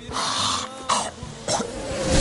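A man coughing in three short, hacking bursts.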